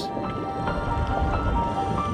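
Background music of short held notes that step from pitch to pitch, over the bubbling rush of water as a snorkeller plunges in.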